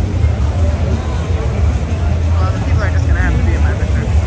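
A steady deep rumble with a few voices over it, about two to three seconds in.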